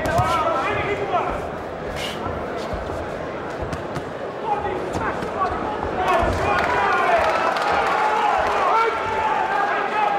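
Boxing gloves landing punches with sharp thuds, one about two seconds in and several more a little later, over an arena crowd shouting. The crowd's shouting swells about six seconds in as the referee steps in.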